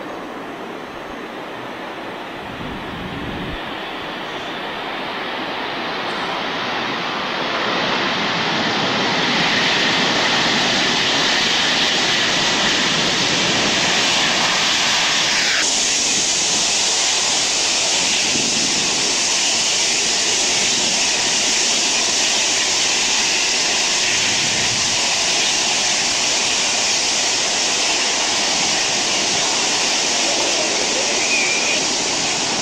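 Lockheed L-1011 TriStar's turbofan engines after touchdown, rising over several seconds into a loud roar, the build-up of reverse thrust during the landing roll. About halfway through the sound changes abruptly to a steady, loud jet-engine roar.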